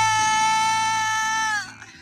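A female lead vocalist holds one long sung note over the worship band's sustained chord. About a second and a half in, the note sags and the music drops away to a much quieter moment.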